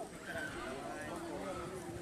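Indistinct voices talking quietly in the background.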